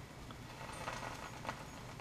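Margarine-spread bread sizzling faintly in a hot iron sandwich toaster on a gas burner, with a few small crackles as the margarine melts.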